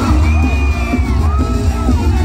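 A band playing live through a concert sound system, with strong bass and held melodic notes above it, heard from among the audience.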